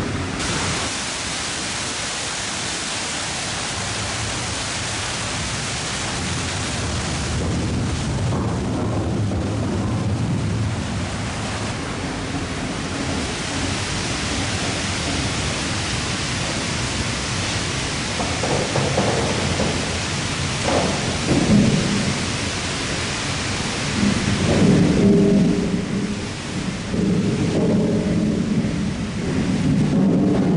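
Steady rushing of water driving a 19th-century water-powered slipway winch, heard close to its intake and machine room. Near the end the rush eases and a lower, uneven rumble from the gearing and cable drum comes forward.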